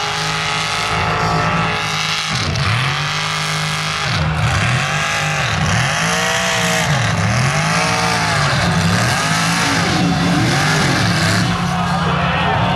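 Mega truck's engine revving hard over and over, its pitch dropping and climbing back up every second or two as the throttle is worked.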